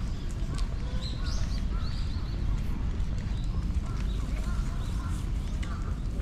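Birds chirping and calling in many short rising-and-falling notes, over a steady low rumble.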